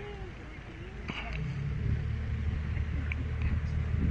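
Pontoon ferry's outboard motor running at low speed with a steady low hum, growing louder about a second and a half in as the boat manoeuvres to dock.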